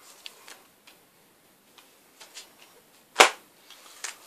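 Vinyl LP sleeves being handled: faint rustles and light taps, then a single sharp slap about three seconds in, typical of a cardboard record jacket being set down hard on a stack.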